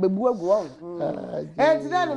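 Voices talking in a TV studio, with a short rough, gravelly vocal sound about a second in, partly overlapping another voice.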